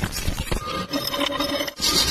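Stick-welding arc crackling and sizzling as the electrode burns along the steel joint. About half a second in, a few faint steady tones join it, and near the end there is a short, louder rush of noise.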